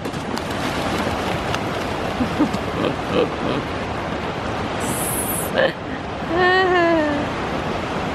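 Surf breaking and washing up the shore, a steady hiss of waves. About six and a half seconds in, a person gives one drawn-out shout.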